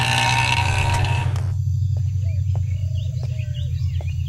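A low, steady drone from the film's background score. For about the first second and a half a busy street-like ambience lies over it. That ambience then cuts away abruptly, leaving a few faint bird chirps.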